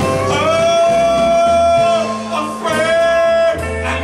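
Live band performing a slow ballad: a male singer holds two long notes into the microphone over electric guitar and bass.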